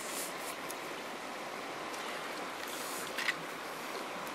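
Steady rushing of a stream's flowing water, with a brief soft rustle about three seconds in.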